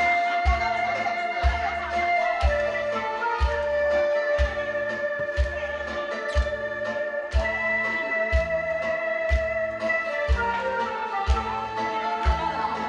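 Instrumental intro of a Korean trot backing track: long held melody notes over a slow, steady kick drum, about one beat a second.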